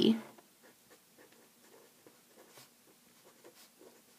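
Faint scratching of a pen writing by hand on a sheet of paper, a string of short irregular strokes as words are written out.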